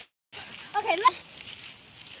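A girl's short, high wordless vocal sound about a second in, after a brief drop to dead silence at the very start.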